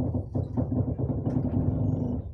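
Passenger train running, heard from inside the carriage: a steady low rumble of the wheels on the rails with a steady hum over it.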